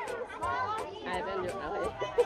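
Chatter: several voices talking over one another, with light, evenly spaced ticks behind them.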